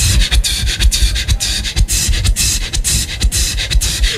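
Beatboxing into a handheld microphone over a stage sound system: a fast run of sharp percussive mouth sounds over deep bass hits.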